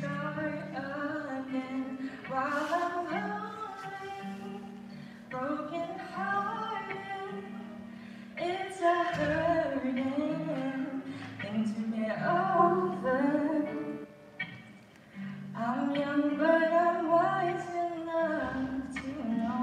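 A solo singer with acoustic guitar accompaniment: a sung melody over held, strummed or plucked guitar notes, in phrases with short pauses between them.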